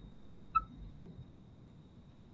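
Felt-tip marker writing on paper, faint, with one short squeak of the tip about half a second in.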